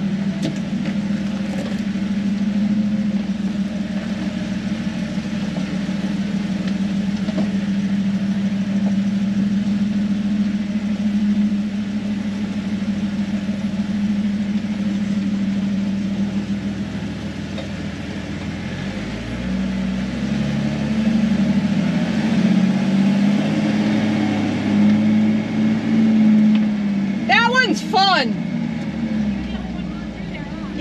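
A Jeep's engine crawling in low gear, heard from inside the cab: a steady low note, then rising and falling with the throttle from about two-thirds of the way in as it works over the rocky trail.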